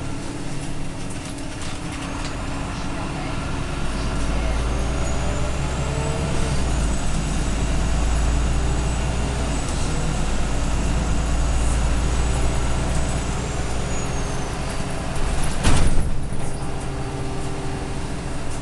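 Irisbus Citelis Line diesel city bus heard from inside the passenger cabin while under way: a deep engine drone that grows louder over several seconds, with a faint high whine rising, holding, then falling away. A single sharp knock or clatter comes near the end.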